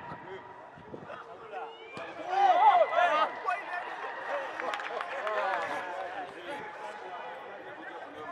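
Men's voices shouting excitedly on a football pitch, loudest about two to three seconds in, over a steady high tone held for several seconds.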